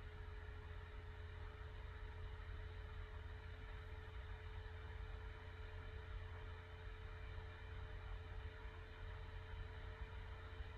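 Steady low hum with a faint constant tone above it, unchanging throughout: background room noise with no distinct handling sounds.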